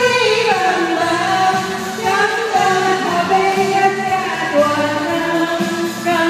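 A woman singing a song into a microphone over a karaoke backing track, holding long notes that step up and down in pitch over a steady bass line.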